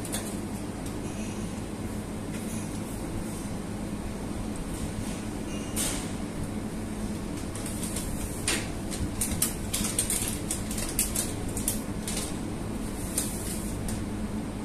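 Steady low rumble of commercial kitchen ventilation and equipment. About halfway through, a run of light, irregular clinks of metal utensils on steel bowls begins and lasts several seconds.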